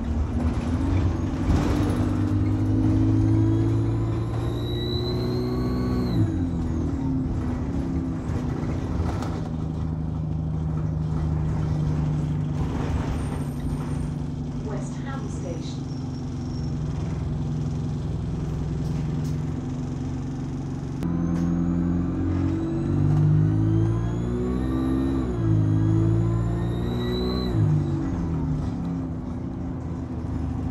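An Alexander Dennis Enviro200 single-deck bus's turbocharger screaming as the bus accelerates, heard from inside the cabin. A high whine rises in pitch over the engine's drone and falls away when the driver lifts off, about six seconds in. It comes again from about twenty seconds in until near the end.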